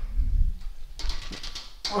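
TRX suspension straps' metal buckles clicking and rattling a few times as the body swings from a row into a rollout, with a short low vocal sound near the start.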